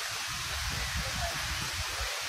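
Steady rushing hiss of the Magic Fountain of Montjuïc's many water jets, with an uneven low rumble underneath.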